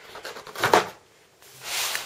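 Brief handling noise about two-thirds of a second in, as a motherboard is lifted out of its box and set down, followed by a short hiss near the end.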